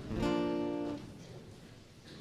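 Acoustic guitar struck once, ringing for about a second and then fading.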